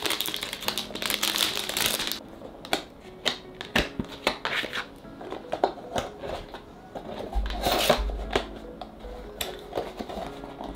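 Thin plastic wrapping on a perfume box crinkling and rustling as it is pulled away, for about the first two seconds. Then scattered light taps and scrapes of a cardboard box being handled and lifted open, with a louder rustle of handling a little before eight seconds.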